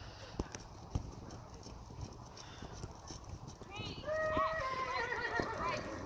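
A horse whinnies for about two seconds, starting about four seconds in, the loudest sound here. Before it, the soft hoofbeats of a horse trotting on sand arena footing and two sharp knocks in the first second.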